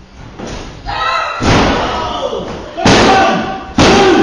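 Bodies slamming onto a wrestling ring's canvas: a series of loud thuds, three or four within a few seconds, with voices among them.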